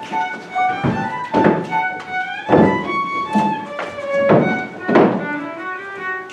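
Fiddle music playing a melody, with about six heavy thumps at an uneven pace.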